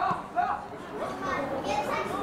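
Young voices shouting and calling out across a football pitch during play, several at once and overlapping.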